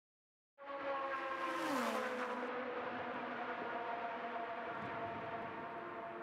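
Indy Lights open-wheel race car engine running at speed on track, starting about half a second in and holding a steady high note, with one note dropping in pitch about a second and a half in.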